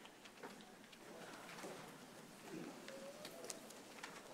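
Faint room sound of a seated audience in a large hall: a low, scattered murmur of voices with small rustles and clicks.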